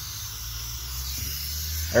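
Fluid Film aerosol can spraying through its thin extension straw: a steady hiss, over a steady low hum.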